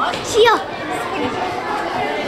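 Children's voices: a girl says a short phrase, "Și eu!", over the chatter of a group of schoolchildren.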